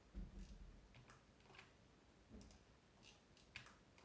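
Near silence with a few faint, scattered computer mouse clicks.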